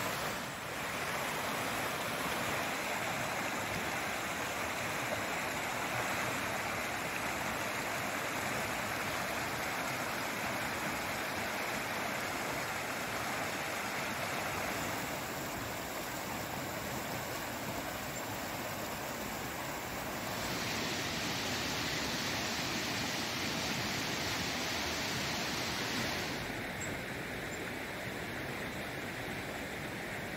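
River water rushing steadily over a rocky riffle below a dam. The rush changes tone abruptly a few times, at about a quarter, two-thirds and near the end.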